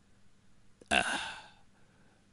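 A short, sudden, breathy vocal sound from a person about a second in, fading within about half a second.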